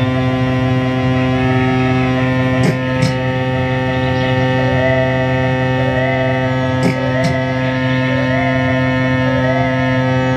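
Loud, sustained electronic drone made of a dense stack of steady tones, with a wavering pitched figure repeating about once a second. A few sharp clicks come in pairs about three and seven seconds in.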